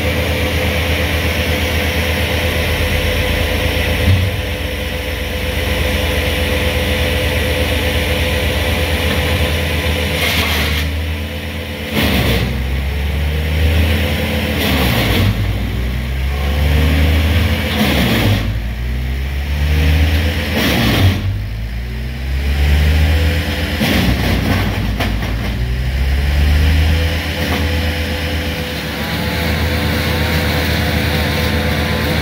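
Diesel engine of a truck-mounted crane running steadily, then revving up and falling back repeatedly, roughly every two to three seconds, through the second half as the crane works a lift.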